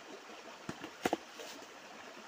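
Shallow rocky stream running over stones, with a few short, sharp knocks about a second in as hands work among the stones in the water.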